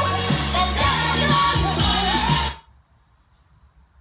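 Pop song with singing from an FM station played through a Sansui TU-999 tuner, cutting off abruptly about two and a half seconds in as the tuning knob is turned off the station, leaving near silence.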